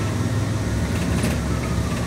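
Steady low rumble of a moving ambulance, engine and road noise heard from inside the patient compartment.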